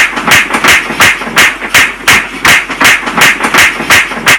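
A hand banging repeatedly on a wall: loud, sharp slaps in a steady rhythm of about three a second.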